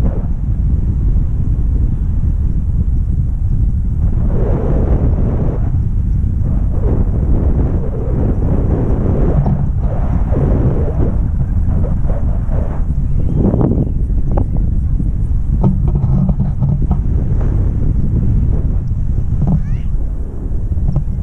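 Wind buffeting the action camera's microphone in flight: a steady low rumble that swells at times.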